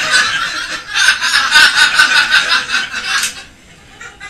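A group of people laughing together, loud and crowded at first, dying away a little after three seconds in.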